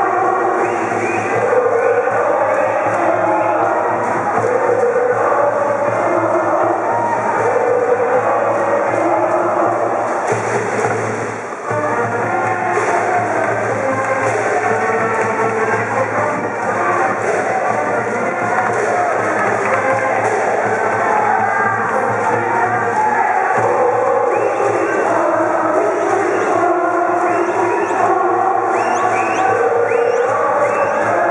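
A high-school brass band plays a baseball cheer song (ōenka) with a sousaphone in the low end, and the cheering section's voices join in. The music pauses briefly about a third of the way in.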